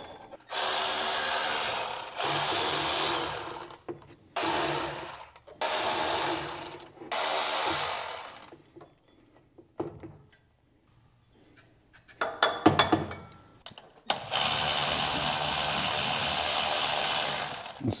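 Cordless electric ratchet running in several short bursts of a second or two, spinning out engine pulley bolts, with faint metal clicks in a quieter stretch in the middle. It finishes with one longer run of about four seconds near the end.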